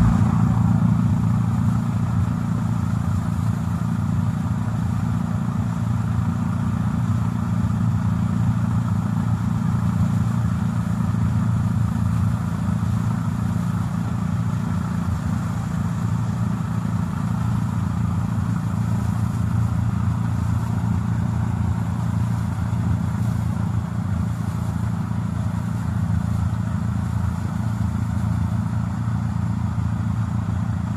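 Tractor engine running at a steady speed while driving a front-mounted snow blower, an even, unchanging low drone.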